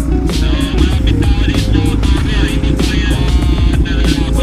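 Background music with a steady beat over the low rumble of a motorcycle engine idling.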